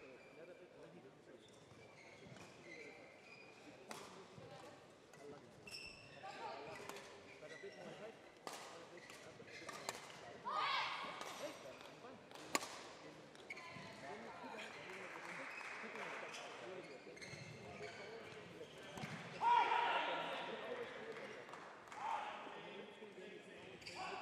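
Indistinct voices echoing in a large sports hall, with a few sharp knocks now and then.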